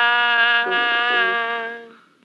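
Tanpura drone: a steady, buzzing sustained chord rich in overtones, fading away over the last half second.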